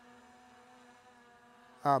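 Near silence with a faint steady hum, ended by a man saying "uh" near the end.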